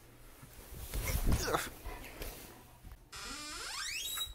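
A door hinge creaking in one long, steadily rising squeak over the last second, as the metal security door swings. Before it, about a second in, come a few short scuffling sounds.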